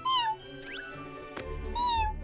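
Cartoon kitten meowing: two short, high mews, one at the start and one near the end, over background music.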